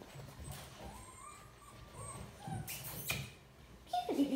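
Golden retriever puppy whimpering faintly a few times in short, thin rising whines, with a brief soft rustle near the end.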